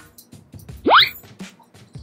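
Background music with a steady beat, and about a second in a quick, loud upward-sliding whistle-like sound.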